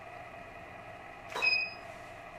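A single camera shot with studio flash: a sharp click about a second and a half in, followed by a short high-pitched electronic beep, the sound of the flash signalling that it has recycled.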